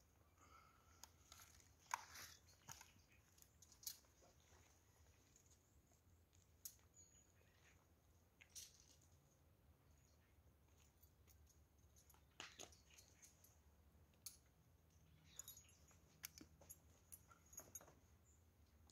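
Near silence, broken by a dozen or so faint, scattered clicks and ticks that come more often near the end.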